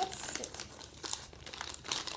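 Plastic Doritos chip bag crinkling in irregular crackles as a hand reaches in and pulls out a chip.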